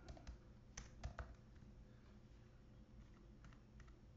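Faint keystrokes on a computer keyboard as a web address is typed: a quick run of taps in the first second or so, and a few more near the end.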